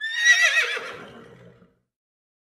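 A horse whinnying once: a loud, high, quavering call that falls in pitch and trails off lower, fading out after about a second and a half.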